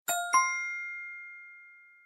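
A bright two-note chime sound effect, two quick dings about a quarter second apart that ring out and fade, marking the correct answer in a quiz.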